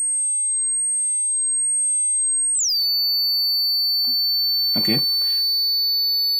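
A high-pitched sine test tone from a software test oscillator, run through the APX-351 tube preamp plugin with its Ultra-X anti-aliasing mode switched on. It holds steady, then about two and a half seconds in glides down to roughly half its pitch and holds there, with faint higher harmonics from the preamp's drive.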